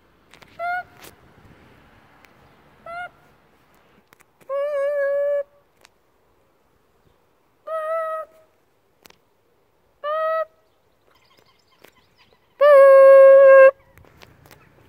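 A child's voice making a series of six held, wordless vocal tones, some short and some about a second long, with pauses between; the last, near the end, is the longest and loudest.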